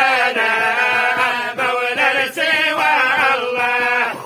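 A group of men chanting a religious supplication together, unaccompanied, in a wavering, ornamented melody with brief breaks between phrases.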